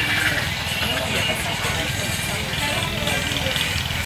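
Indistinct talking at a distance over a steady low rumble like an engine running.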